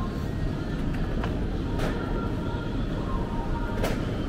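Metal shopping trolley rolling along a supermarket floor: a steady low rumble from its wheels, with a few short clicks and rattles.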